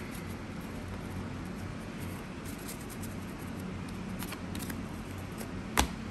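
A stack of cardboard trading cards being gathered and moved across a tabletop, with soft rustles and scattered light ticks, and one sharp click near the end.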